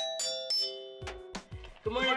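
Chime bars of a school public-address system struck with a small mallet, a few ringing notes in a quick run that stops under a second in. About a second in, music with a heavy drum beat comes in.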